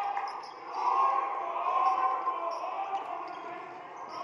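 Gym ambience during a basketball game: a basketball being dribbled on the hardwood floor, with a murmur of voices from a sparse crowd echoing in the hall.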